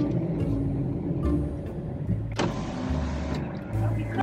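Car engine idling, heard from inside the cabin, with a short burst of hiss a little past halfway.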